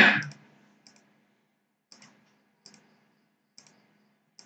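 Computer mouse clicking: about five faint single clicks, roughly a second apart. A short loud burst comes right at the start.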